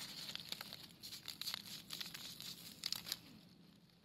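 Dry fallen leaves rustling and crackling faintly, a scatter of short crackles, as a hand works through the leaf litter; the crackles thin out after about three seconds.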